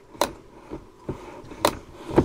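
Two sharp clicks, about a second and a half apart, from a hinged Dometic acrylic RV window being pushed open, its stay clicking into its set opening positions.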